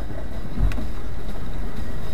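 4WD vehicle driving over a rough gravel track, heard from inside the cab: a steady low engine and tyre rumble, with a single knock from the vehicle jolting over the track about two-thirds of a second in.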